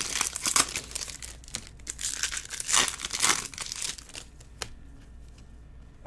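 Foil trading-card pack wrappers crinkling and tearing as packs are handled and opened, in irregular rustles that die down near the end, with one sharp click.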